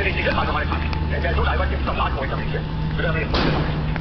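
Indistinct voices over a steady low rumble, with a short burst of noise about three and a half seconds in.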